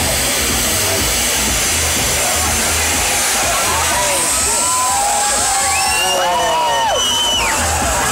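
Steady hiss of ground fountain fireworks spraying sparks, over music with a steady low beat. About halfway through, voices call out over it.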